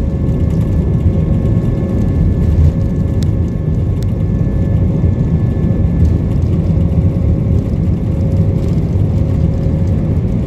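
Jet airliner's engines heard from inside the cabin while taxiing: a loud, steady low rumble with a thin, constant whine above it.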